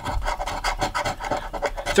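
A coin scratching the coating off a scratch-off lottery ticket in quick, repeated strokes.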